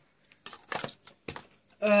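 Metal lid being put back onto a Milo tin: several short clinks and taps in the first second and a half.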